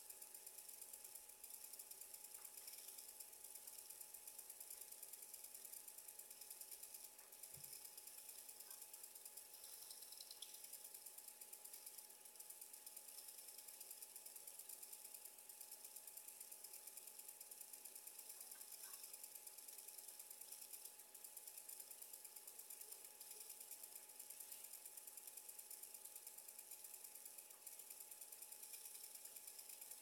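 Near silence: room tone with a faint steady hum and hiss, and a few faint ticks.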